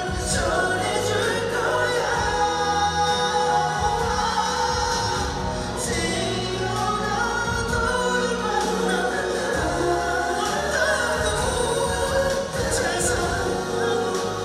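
A male vocalist sings a Korean ballad live into a handheld microphone over amplified backing music, the voice running on without a break.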